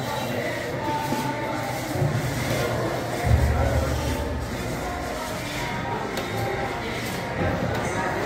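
Background music mixed with indistinct voices in a large indoor hall.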